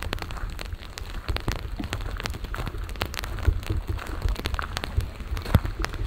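Rain pattering in irregular light ticks over a steady low rumble.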